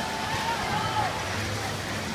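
Steady, echoing noise of a swimming race in an indoor pool hall: swimmers splashing, with distant spectators' voices. One faint long call stands out in the first second.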